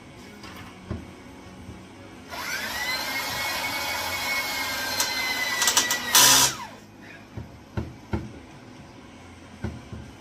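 Corded electric drill boring a pilot hole through a hardened rivet in a snowmobile's aluminium tunnel. The motor whine rises and then holds steady for about four seconds. It ends in a short loud burst about six seconds in, followed by a few light knocks.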